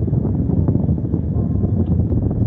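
Wind buffeting a phone's microphone inside a car, a steady low rumble with no let-up.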